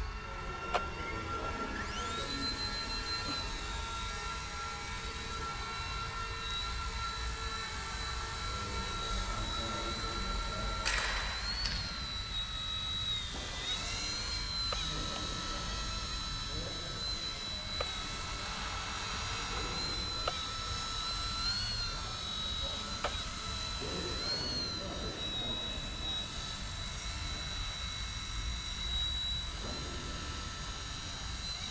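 Eachine E129 micro RC helicopter spooling up about two seconds in, then a steady high-pitched whine from its motor and rotor as it flies. The pitch briefly rises and dips several times as the throttle changes, most markedly around the lift-off.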